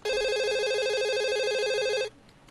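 Electronic telephone ringing: a steady, fast-warbling trill held for about two seconds, which cuts off suddenly at the end.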